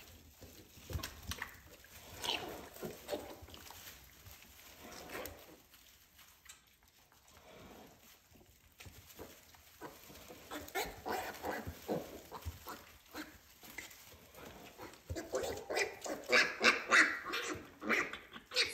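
Pigs vocalising during farrowing: a sow and her newborn piglets, with scattered soft sounds that become louder and more frequent in the last few seconds.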